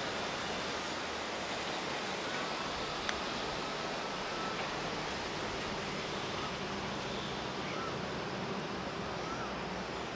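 Steady rush of a river flowing over rocks below, with a single sharp click about three seconds in.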